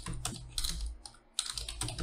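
Typing on a computer keyboard: a quick run of keystrokes, including several backspace presses, with a brief pause a little past the middle.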